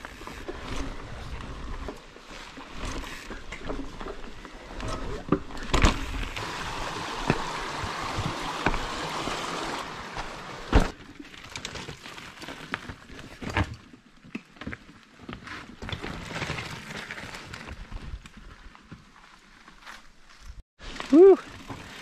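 Mountain bike ridden over rooty, rocky forest singletrack: tyre noise on dirt and rock, with repeated knocks and rattles from the bike as it hits roots and stones. The loudest knocks come about 6 and 11 seconds in.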